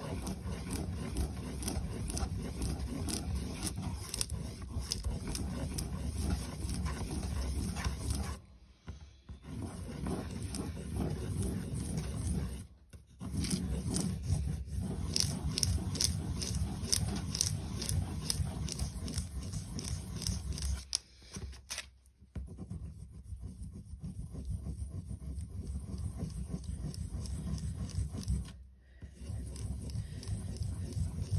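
Children's wax crayon scribbled round and round on tracing paper, a continuous scrubbing of quick strokes that stops briefly four times and grows softer in the last third.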